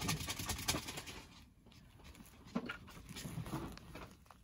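Irregular scratching and rustling in two spells, the first in the opening second and the second near the end, with a quieter gap between.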